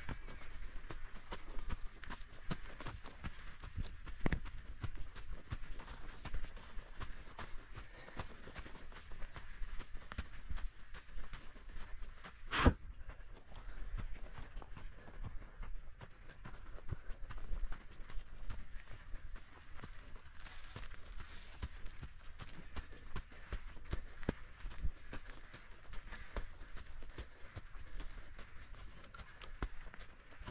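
Mountain bike moving along a soft sand track, rattling with irregular clicks and knocks, with one sharp, loud knock about twelve seconds in.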